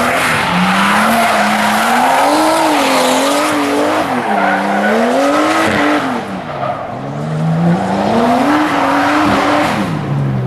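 Nissan S13 drift car's engine revving up and down through a slide, with its rear tires squealing and spinning into smoke. The revs and the squeal ease off a little past halfway, then climb again before falling away at the end.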